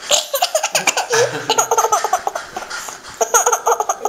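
A toddler laughing in two bouts of quick, repeated bursts, the second shorter, about three seconds in.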